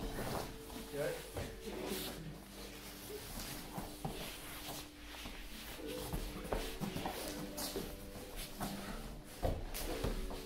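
Bodies shuffling, scraping and thumping on foam mats during no-gi grappling, with a louder thump near the end, over background music.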